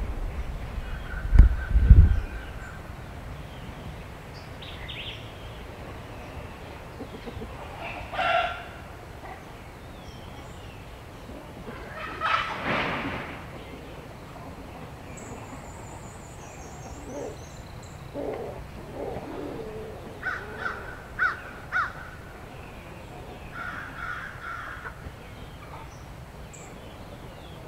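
Poultry calling at intervals outdoors: a call about eight seconds in, a longer call around the middle, and a cluster of short calls near the end, with a brief run of high small-bird chirps in between. Two low thumps about two seconds in are the loudest sounds.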